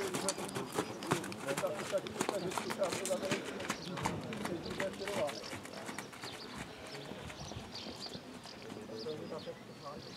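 Horse's hoofbeats on the sand footing of a dressage arena as it trots past, growing fainter in the second half as it moves away. People talk in the background.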